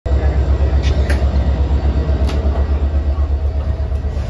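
Inside a passenger train carriage: a loud, deep rumble from the train, pulsing quickly at about seven beats a second, with a few short sharp clicks around the first and second seconds.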